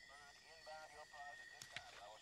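Near silence: faint background ambience with a thin steady high tone and a few faint, short warbling calls in the first second.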